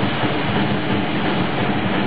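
Live grindcore/power-violence band playing: heavily distorted electric guitar and drums merge into a dense, unbroken wall of noise.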